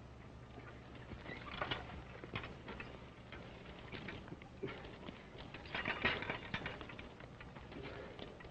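Irregular shuffling and light clatter of harnessed horses shifting about on dirt, with a few louder clusters of knocks, over the steady low hum of an old film soundtrack.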